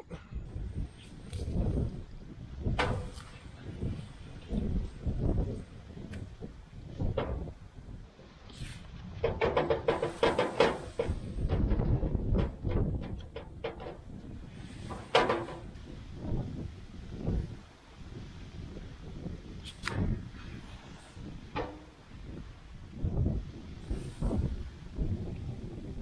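Wind buffeting the microphone in uneven gusts. Steel hydraulic-cylinder parts are handled through it: the piston and gland are worked off the rod and set down, giving a few sharp clinks and knocks and a busier stretch of metal handling about ten seconds in.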